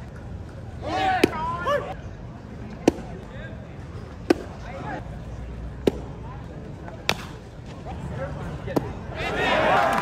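A run of sharp single pops, about six, each a pitched fastball smacking into the catcher's mitt, over steady ballpark ambience. Scattered fan shouts come after the first pop, and a burst of many voices yelling rises near the end.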